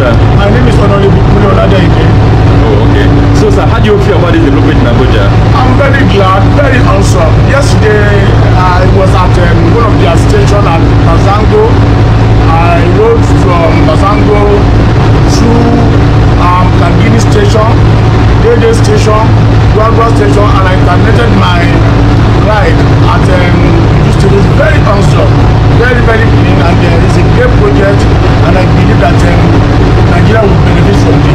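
A man talking continuously over the steady low hum of a light-rail carriage.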